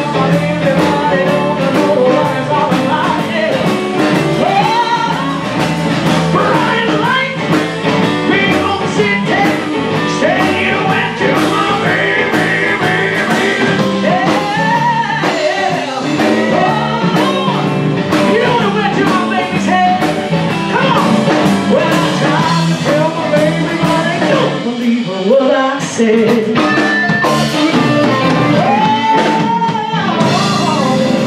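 Live blues band playing: a woman sings into a microphone over electric guitar, bass and drums.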